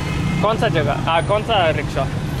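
Men's voices talking in quick exchanges, over a steady low rumble of street traffic and vehicle engines.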